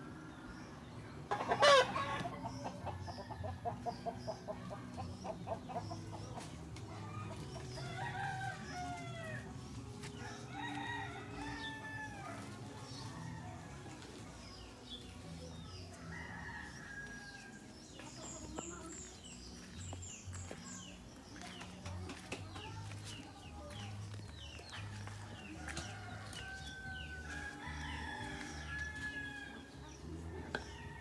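A rooster crowing, with chickens clucking and small birds calling on and off throughout. A single loud sharp knock about two seconds in is the loudest sound.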